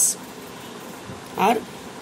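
A short pause in a spoken lecture: a steady faint hiss of background noise, broken by one brief spoken syllable about one and a half seconds in.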